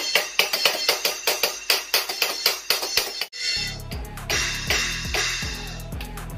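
Music: a fast, very even beat of sharp percussion that breaks off abruptly a little over three seconds in, followed by a different passage with a steady bass beat and pitched notes.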